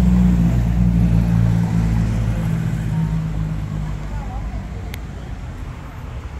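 Road traffic: a motor vehicle's engine running close by, loud at first and fading steadily away.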